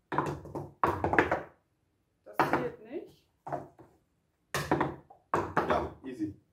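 Plastic cups struck with the hand and flipped onto a tabletop: repeated knocks and clatters in several short clusters, mixed with brief vocal sounds.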